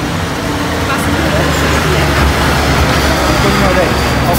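Street traffic with a heavy vehicle's engine rumbling past close by, loudest about halfway through, under faint voices.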